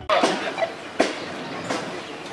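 Roadside street ambience: a steady mixed din of traffic and people, broken by three sharp knocks.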